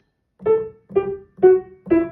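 Piano played staccato with the right hand: four short, detached notes about two a second, stepping down the D major pentascale from A through G and F-sharp to E after a brief pause.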